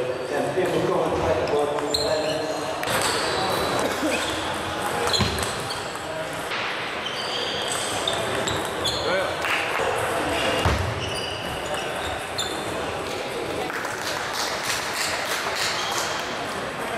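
Table tennis ball clicking off bats and the table in a rally, in an echoing sports hall with voices in the background.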